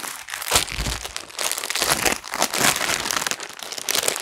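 Clear plastic garment packaging crinkling and rustling continuously as it is handled, with a soft thump about half a second in.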